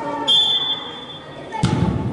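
A short, sharp blast on a referee's whistle, then about a second later a hard thud as a soccer ball is kicked.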